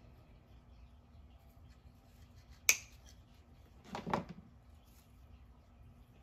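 One sharp click a little before halfway, over faint room tone, from hands working with the stems and tools at the table. A single spoken word follows.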